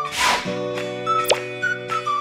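Bright electronic outro jingle: sustained synth chords under short whistle-like melody notes, with a swelling swoosh at the start and a quick downward zip effect a little over a second in.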